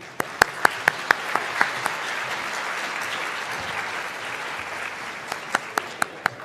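Audience applauding. A few close, sharp individual claps stand out over the steady clapping in the first couple of seconds and again near the end.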